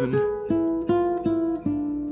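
Classical guitar playing a single-note line, one plucked note about every 0.4 s, outlining the chord tones of an E7 chord in a D minor progression.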